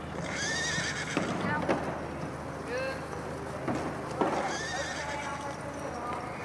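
Horses whinnying: two long neighs, one near the start and one about four seconds in, with a shorter call between them, over the sound of horses trotting in a circus ring.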